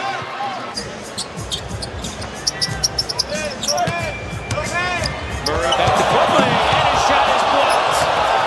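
Basketball game sound: a ball dribbled on a hardwood court, with sharp sneaker squeaks, over arena crowd noise that swells louder about five and a half seconds in.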